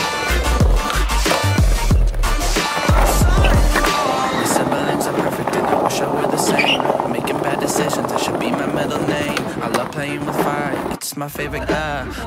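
Skateboard wheels rolling over tiled pavement, under a song with a heavy bass beat. The bass drops out after about four seconds, leaving a steady rolling noise, and there is a brief cut near the end before the music returns.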